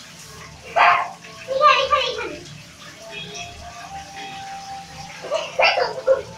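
Water spraying from a handheld shower hose into a bathtub, with children's voices breaking in as short bursts a few times.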